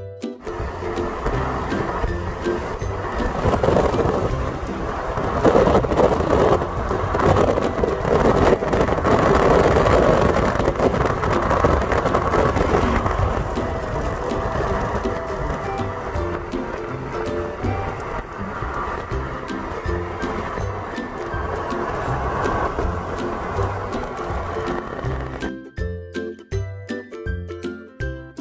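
Background music over the steady road and wind noise of a car driving at highway speed, heard from inside the cabin. The noise grows louder for several seconds in the middle.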